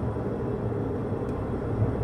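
Steady road and engine rumble inside a moving car's cabin.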